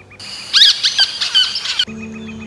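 A high-pitched, squeaky animal sound effect: a run of quick squeaks and chirps lasting about a second and a half that cuts off suddenly near the end.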